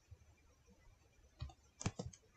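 A few faint, sharp clicks of computer input during editing, coming in the second half, the loudest just before the end.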